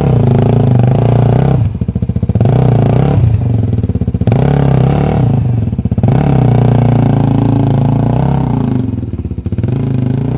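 Dirt bike engine revving, falling back four times to a slow putt before picking up again.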